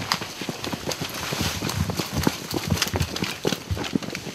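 Hurried footsteps through forest undergrowth: irregular thuds on the ground, several a second, mixed with the rustle and crackle of grass and leaves.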